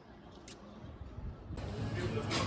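Faint quiet background with a small click, then about a second and a half in an abrupt switch to louder outdoor town background noise with a steady low rumble.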